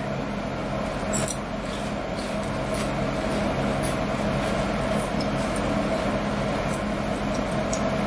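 Crunching and chewing of crisp seaweed-and-rice crackers, a dense, steady crunch with a few sharper clicks.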